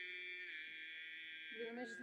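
Greek Orthodox Easter liturgy chanting heard through a loudspeaker: one steady held note with strong upper overtones and a thin sound, stepping slightly in pitch about half a second in.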